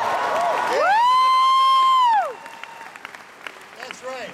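A long, high-pitched vocal whoop that rises, holds for about a second and falls, loud through the hall; after about two seconds it gives way to scattered applause and claps from the audience.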